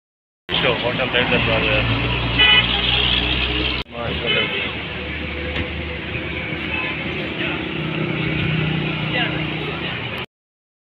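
Road and traffic noise from a vehicle driving along a road, with a short horn toot about two and a half seconds in.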